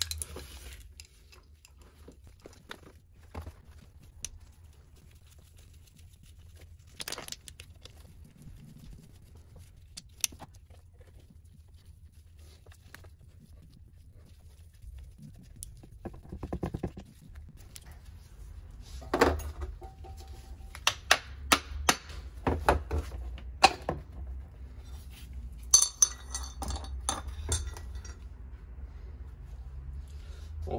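Metal clinks and knocks of hand tools, bolts and covers on a two-stroke KTM engine's crankcase as it is taken apart. They are sparse at first, then come in a busy run of sharp clinks in the second half.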